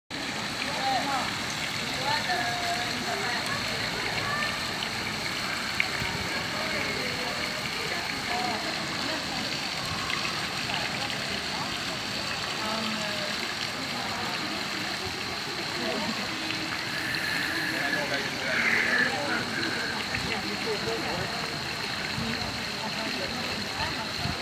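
Public fountain's cone-shaped jet splashing steadily into its round stone basin, a continuous rush of falling water, with distant voices faintly behind it.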